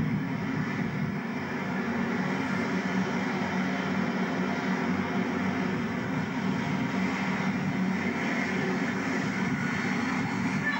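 Thames Turbo diesel multiple-unit train running at a station platform: a steady engine drone with a low hum, growing a little louder near the end as the train moves past.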